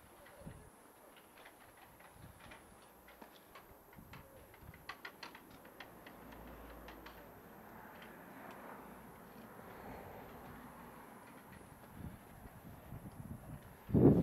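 Quiet street ambience while walking: faint scattered clicks and steps in the first half, then a soft rush of distant noise that swells and fades in the middle.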